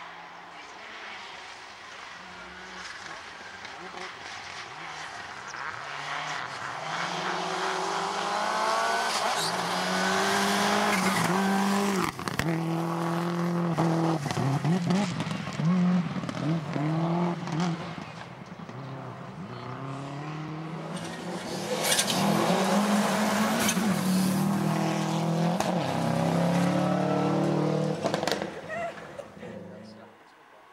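Rally car engine revving hard, its pitch climbing and dropping again and again through gear changes as it runs at stage speed. It comes in two loud spells, about ten seconds in and again from about twenty-two seconds, and cuts off just before the end.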